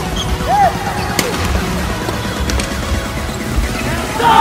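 Badminton rally: rackets strike the shuttlecock three times, about a second and a quarter apart, with a brief shoe squeak on the court floor early on. Music plays underneath throughout.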